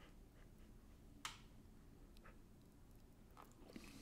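Near silence: faint room tone with a low hum and a few small clicks, the sharpest about a second in.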